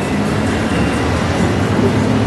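A procession of Honda Gold Wing touring motorcycles riding past at low speed, their engines a steady low drone.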